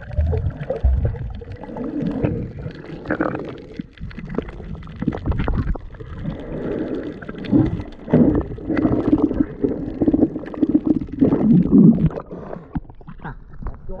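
Water gurgling and rumbling around a submerged camera, heard muffled underwater, in irregular swells.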